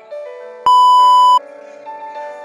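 Piano background music, cut across about two-thirds of a second in by a loud, steady electronic beep lasting under a second, the kind of single-tone bleep used to censor, which stops abruptly.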